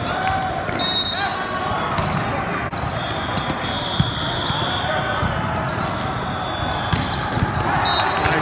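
Volleyball rally in a large, echoing hall: sharp smacks of the ball being struck, over a steady din of players' voices from the surrounding courts.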